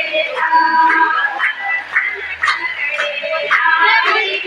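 Women singing a devotional bhajan together, with scattered hand claps.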